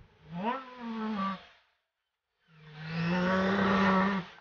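Bus engine revving: a pitched drone that rises, holds and drops away, then a longer, louder steady run.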